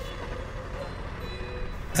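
Steady low rumble of city street traffic, with faint background music underneath.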